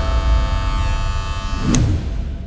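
Logo sting sound design: a steady buzzing chord of held tones with a swoosh near the end, then fading away.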